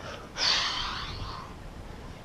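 A man's forceful exhale, a single breathy rush that starts about half a second in and fades away over about a second, as he lowers himself from plank down to the mat.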